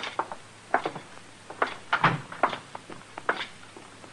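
Radio sound-effect footsteps of two men in boots walking out onto wooden porch boards, heard as an uneven run of knocks and clicks with one heavier step about two seconds in.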